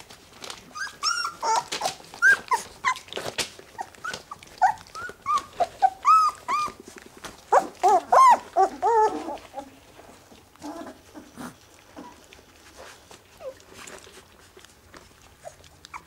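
Young puppies whining and squeaking in many short cries that rise and fall in pitch, thickest over the first nine seconds or so and growing sparse after. The cries come as the orphaned puppies root and nose into a person's clothing.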